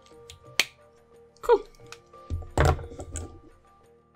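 Plastic twin-tip marker handled on a table: a sharp click about half a second in, then a cluster of knocks and a dull thud as the marker is set down beside the other one. Soft background music plays under it.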